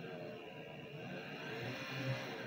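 12-volt DC motor driving a reduction gearbox through a shaft coupling, running with a steady low whirring hum under a knob-type speed controller, growing slightly louder near the end as the speed is turned up.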